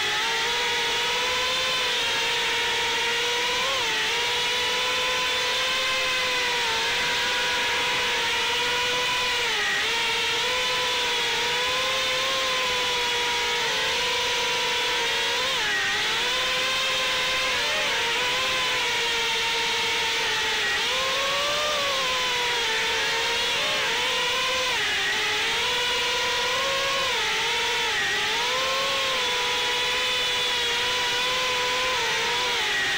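A GEPRC Mark 4 FPV quadcopter's brushless motors and propellers whining in flight, heard from the drone's onboard camera. The whine holds a steady pitch with small dips and rises as the throttle changes.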